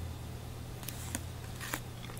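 Quiet steady low hum with a few faint ticks from fingers handling a thick trading card.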